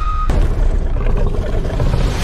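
A loud, deep rumble, a trailer sound effect, taking over when a held music tone cuts off about a quarter second in.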